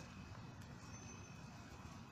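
Quiet steady low rumble of background noise with a thin, steady high whine running through it.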